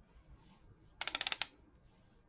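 A brief rapid rattle of small sharp clicks, about half a second long, about halfway through.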